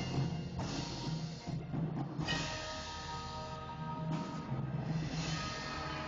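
A high school percussion ensemble playing a piece: steady low pitched notes with several bright swells rising and falling over them.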